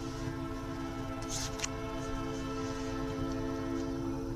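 Locomotive air horn sounding one long, steady chord on a passing excursion train, heard from inside a car, with two brief clicks about a second and a half in.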